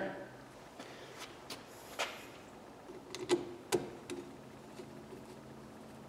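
A few faint scattered clicks and taps of a screwdriver's metal tip being fitted against a screw and handled, the sharpest about two, three and a third, and three and three quarter seconds in.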